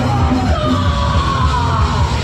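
Punk rock band playing live: distorted electric guitars, bass and drums, loud and dense, with a shouted vocal over it.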